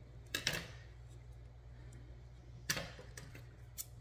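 Scissors snipping through burlap: a few short, sharp cuts, one about half a second in and another a little under three seconds in, with a fainter snip near the end, over a low steady hum.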